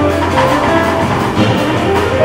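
Live jazz piano trio playing: piano notes over a sustained bass note, with drums and cymbals keeping time.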